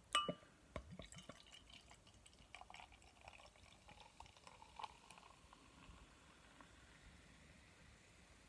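Lager poured from a glass bottle into a glass. A light glass clink with a short ring comes right at the start, then a faint trickling pour with fizzing from the foaming head, dying away after about five seconds.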